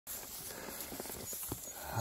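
A horse walking through tall grass: a few soft, irregular hoof thuds over a faint steady rustle.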